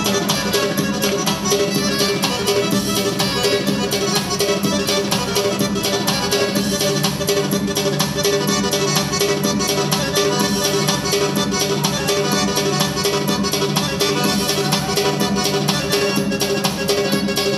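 Azerbaijani wedding dance music from a live band with electronic keyboards, playing a fast, steady beat under a sustained melody.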